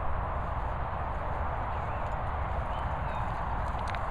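Wind buffeting the microphone as a flickering low rumble over a steady outdoor hiss, with a faint click near the end.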